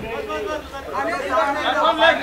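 Several people talking at once in the background, an indistinct babble of voices around a press gathering.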